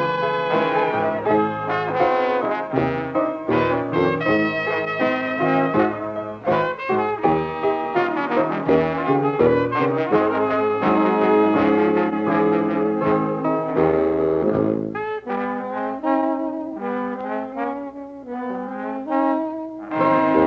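Traditional jazz band playing a slow blues, live, with trombone and trumpet leading over the rhythm section.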